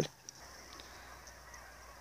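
A flock of geese honking in the distance, faint, with a few scattered calls. The tablet's microphone picks them up only weakly.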